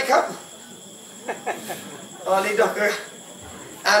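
A man's voice in short, untranscribed vocal bursts with pauses between them: one at the start, one in the middle and one near the end.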